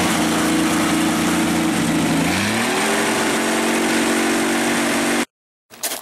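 The rat rod's engine running steadily, then revving up to a higher, steady speed about two and a half seconds in. The sound cuts off abruptly shortly before the end.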